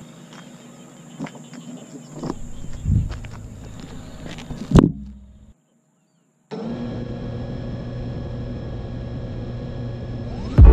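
Handling knocks and clicks, one sharp click louder than the rest about five seconds in. Then, after a short break, comes the steady hum of a 6-inch FPV quadcopter's Ethix Konasty 2407 brushless motors idling, armed on the ground before takeoff.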